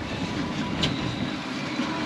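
Twin Yamaha XTO V8 outboard engines running steadily at low speed, with water noise around the stern.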